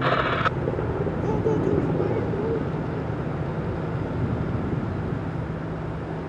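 A steady low engine drone under a constant outdoor hiss, with faint distant voices about one to two and a half seconds in. A brief rush of noise at the very start.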